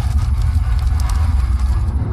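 Intro logo sound effect: a burst of crackling and clicking over the deep, steady bass drone of the intro music. The crackle stops near the end.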